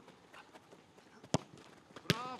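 A football kicked once in a shot at goal: a single sharp thump a little over a second in.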